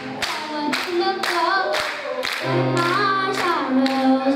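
Hand claps in a steady beat, about two a second, with a voice singing a gliding melody over them and no piano playing.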